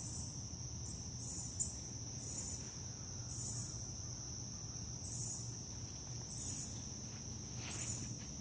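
Insects singing, crickets among them: a steady high-pitched drone with a pulsed call repeating about once a second.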